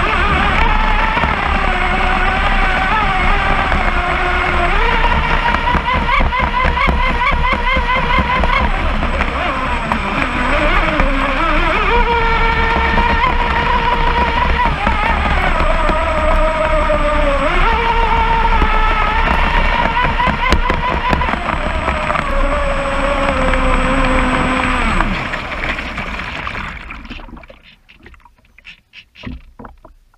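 Pro Boat Blackjack 29 RC catamaran heard from on board: its brushless electric motor whines over the rush of water along the hull, the pitch stepping and gliding up and down several times as the throttle changes. Near the end the motor is cut and the sound dies away to small splashes and lapping as the boat coasts to a stop.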